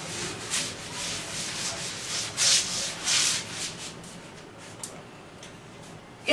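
A duster rubbed in repeated strokes across a green chalkboard, wiping off chalk, each stroke a dry swish; the strokes die away after about four seconds.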